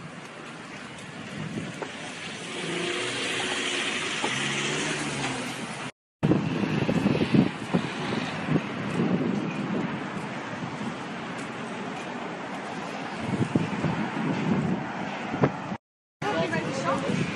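Urban street ambience with road traffic and an uneven low rumble. The sound cuts out for a moment about six seconds in and again at the very end.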